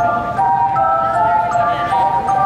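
Live string ensemble of violins, cellos and double bass playing a melody in held, bowed notes, several parts in harmony, moving to new pitches every half second or so.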